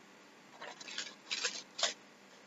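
Tarot cards being handled, sliding and rubbing against one another in three short papery brushing bursts, the last two sharper.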